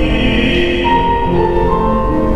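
A male opera singer singing in full classical voice, accompanied by a grand piano.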